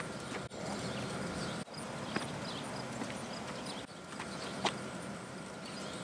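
Outdoor background: a steady hiss with faint, evenly repeated high chirps and two brief light clicks.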